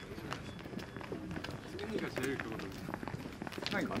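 Footsteps of several people walking on pavement, with quiet, indistinct chatter among them.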